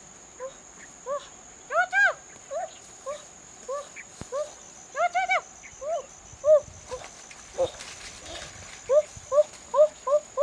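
A small dog whining and yelping over and over in short, high, rising-and-falling cries, some in quick runs of three or four, over a steady high buzz of insects.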